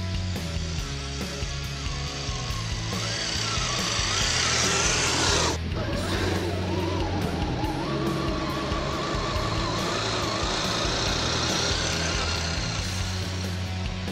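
Rock music over the whine of a Redcat RC crawler's electric motor as it drives through snow. The whine rises in pitch and cuts off suddenly about five and a half seconds in, then carries on wavering.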